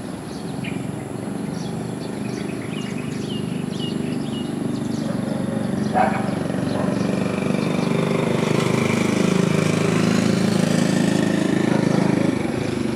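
Outdoor rumble, most likely from a road vehicle, growing steadily louder toward the end. Short high chirps sound in the first few seconds, and a single sharp knock comes about halfway through.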